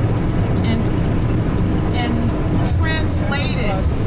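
Bus moving along the road, heard from inside the cabin as a steady low engine and road rumble.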